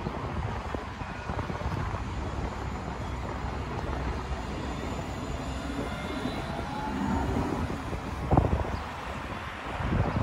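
Alstom Citadis tram running past at a platform: steady rolling noise with the faint rising whine of its electric traction motors, and a brief thump about eight seconds in.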